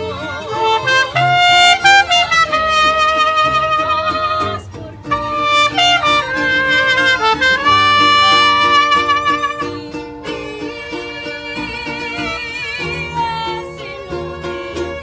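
Mariachi band playing: trumpets lead with loud held notes over violins, guitarrón and strummed vihuela, with a brief break a little before five seconds in. The music turns softer for the last few seconds.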